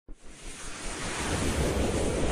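A rushing, wind-like whoosh sound effect from an animated intro, swelling steadily in loudness.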